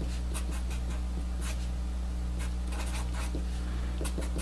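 Sharpie marker writing on paper: a run of short, separate scratchy pen strokes as symbols are drawn, over a steady low hum.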